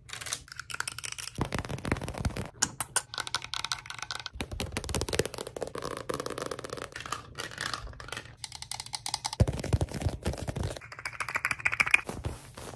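Long fingernails tapping and scratching on objects in quick succession: a plastic toy blaster, then a paperback book's cover. Dense clicks and scratchy rustling, the texture changing every second or two.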